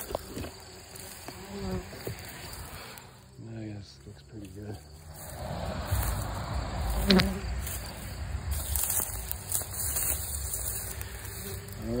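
Bumblebees buzzing as they leave a tipped plastic bin and fly off, with one short knock about seven seconds in.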